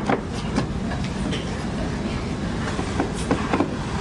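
A few light wooden knocks and clicks from a wooden Montessori geometric cabinet's drawer and shape trays being handled, over a steady hiss and rumble of old film sound.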